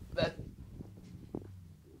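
One short spoken word, then quiet room tone with a steady low hum and a faint click a little past the middle.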